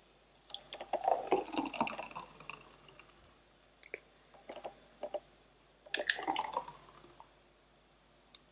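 Thick green smoothie poured from a blender cup into drinking glasses in two pours, the first about half a second in and the second about six seconds in.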